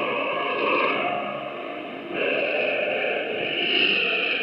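Voice of Korea shortwave broadcast received on 9335 kHz. The programme audio is thin and muffled and smeared by noise, and it fades down about halfway through before coming back up.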